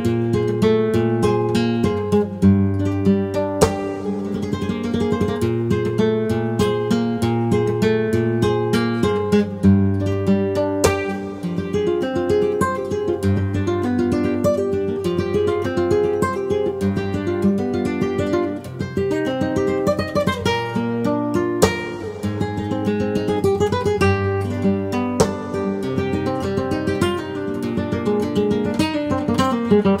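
Solo flamenco guitar playing a soleá: a plucked melody and chords over a repeated bass note, with a few sharp strummed accents.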